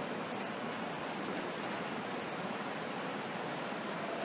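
Steady, even hiss of background room noise, with no words.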